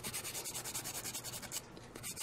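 Fine-grit nail file rubbed quickly back and forth over a natural fingernail in rapid, even scraping strokes, stopping about a second and a half in. The nail is being roughened to take off its surface shine so press-on nail glue will grip.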